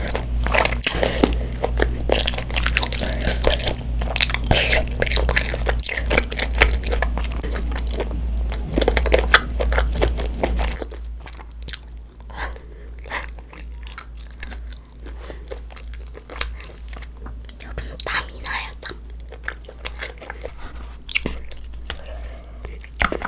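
Close-miked chewing of spicy tteokbokki: wet, sticky mouth sounds of chewy rice cakes and noodles with many small clicks. Dense and loud for the first half, then quieter and sparser from about eleven seconds in.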